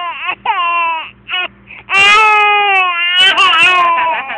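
Eleven-month-old baby crying: a couple of short wails, then a long, louder wail from about halfway through.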